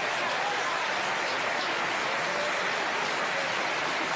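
A studio audience laughing and applauding in a long, steady wave.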